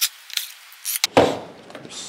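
Small metallic clicks and rattles of screws and hand tools being handled, then a louder clunk a little over a second in as a cordless drill is set down on a wooden workbench. The drill's motor is not running.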